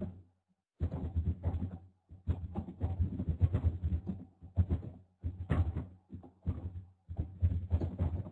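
Runs of rapid clicks or taps, each lasting about a second, that cut off abruptly between runs, with a low electrical hum under them.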